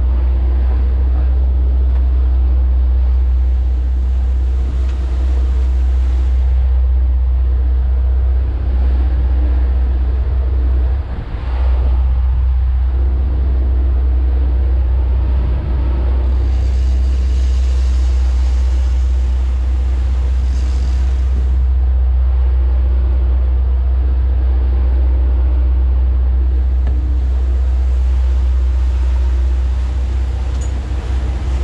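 Sportfishing boat's inboard engines running steadily under way at trolling speed, a constant low rumble with the rush of wind and the churning wake over it.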